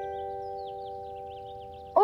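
Background score: a held chime-like chord of several steady tones, slowly fading away.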